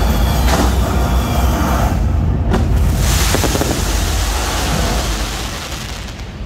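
Pyrotechnics going off: a loud low rumble, a sharp bang about two and a half seconds in, then a hissing rush that fades near the end.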